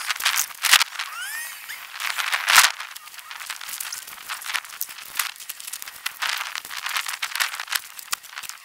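Crinkling and rustling of vinyl pool sheeting and a paper instruction sheet being handled, in irregular crackly bursts, the loudest about two and a half seconds in. A few short rising squeaks come about a second in.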